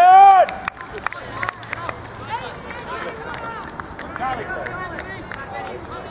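A loud drawn-out shout in the first half second, then quieter shouted calls from players and onlookers across an outdoor football pitch, with scattered short thuds.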